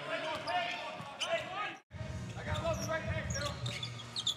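Live basketball game sound in a large, sparsely filled arena: a ball bouncing on the hardwood court under voices from the court and stands. The sound cuts out suddenly a little before halfway, where two clips are spliced, and resumes with the next play.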